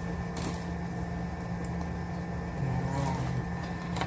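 A steady low hum with a fixed pitch, under faint rustles of objects being handled, and a brief faint murmur of a voice about three seconds in.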